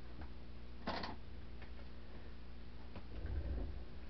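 Electric fan running with a steady low hum, with a few faint ticks and a short rustle about a second in.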